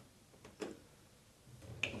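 Pencil marking on the wall through the holes of a shelf U-bracket: a few faint clicks and taps, a small cluster about half a second in and a sharper click near the end.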